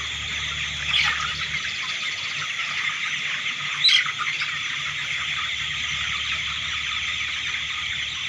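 A large flock of young broiler chickens chirping continuously, a dense steady chorus of overlapping peeps, with two louder calls standing out about one and four seconds in.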